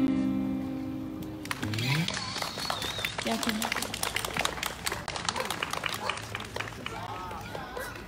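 Acoustic guitar's final chord ringing out and fading over about a second and a half as a song ends, then several seconds of scattered hand-clapping.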